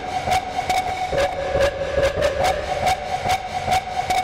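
Hard trance music in a sparse passage: sharp percussive hits at a steady rhythm, about three a second, over a pulsing held synth tone.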